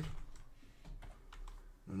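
Computer keyboard typing: a few separate, fairly faint keystrokes as digits in a text field are corrected.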